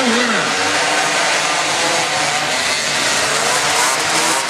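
Several small 90cc CVT racing quads' engines buzzing and revving, their pitches rising and falling as they round the track, echoing in a large hall.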